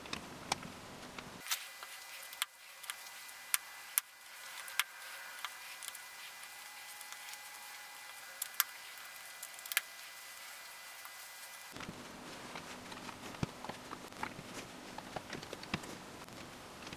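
LEGO bricks clicking as they are handled and pressed onto a partly built model: quiet, irregular sharp plastic clicks and taps.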